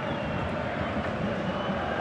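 Steady background noise of a football stadium crowd, an even wash with no single sound standing out.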